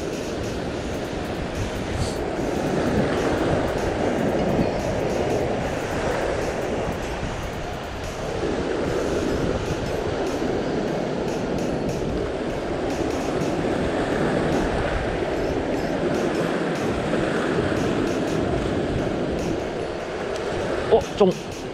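Ocean surf washing over a rock ledge: a continuous rushing that swells and eases every few seconds as the waves come in.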